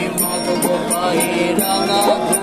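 Live group singing of a Bengali folk song, several voices together, over a strummed ukulele and a steady jingling percussion at about four strokes a second.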